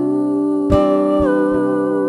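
Three women's voices singing a wordless 'ooh' in close harmony, holding long notes; the upper voice steps down in pitch about a second in. A strummed acoustic guitar chord comes in under the voices a little before that.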